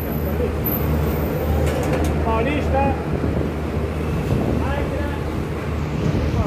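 Steady low machine hum and noise at a CNG filling station while a car is being filled, with brief faint voices in the background.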